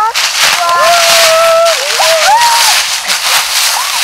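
A man's excited, drawn-out shout of "let's go", held for over a second and wavering in pitch, followed by shorter exclamations.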